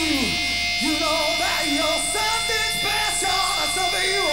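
Male rock singer singing live through a handheld stage microphone, his voice sliding up and down over one steady held note.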